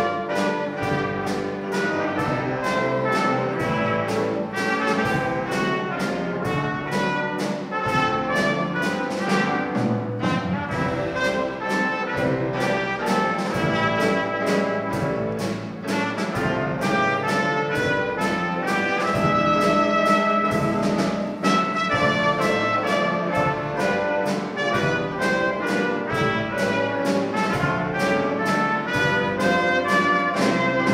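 Dixieland jazz combo playing: trumpet, clarinet, trombone and tenor sax over banjo, tuba, keyboard and drums, with a steady beat.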